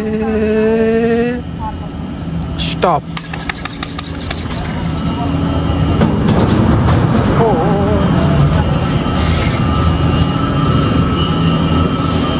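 Chairlift machinery at the lower station: a steady hum with a thin high whine over it, and a run of rattling clicks around three to four seconds in as the chair enters the station. It opens with a rising tone that cuts off just over a second in.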